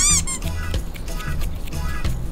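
A kitten gives two quick, high-pitched squeaky mews, the pitch rising and falling in each, right at the start. Background music plays throughout.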